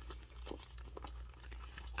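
Faint rustling and scattered small clicks of hands handling items inside a handbag, with a crinkle of packaging.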